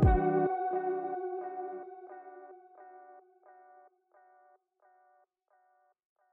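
Music: a guitar chord ringing out through an echo effect, its repeats coming about every two-thirds of a second and fading away to nothing.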